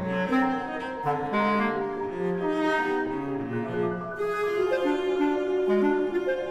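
Contemporary classical chamber music: a clarinet and a cello playing overlapping held notes in two independent melodic lines.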